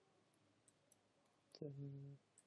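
A few faint computer keyboard keystrokes, soft isolated clicks, in near silence.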